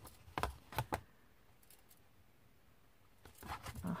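Card and a plastic ruler being handled: a few light taps and clicks in the first second, then quiet, with rustling of the card building up near the end.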